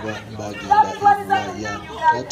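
A woman's voice calling through a handheld megaphone, with other voices chattering around it.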